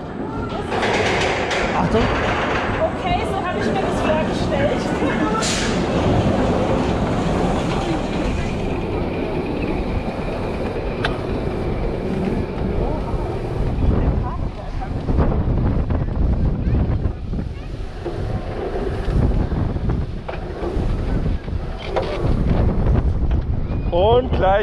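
Mammut wooden roller coaster train climbing its lift hill: a steady rattling and clanking from the lift, with sharp irregular clicks in the first few seconds.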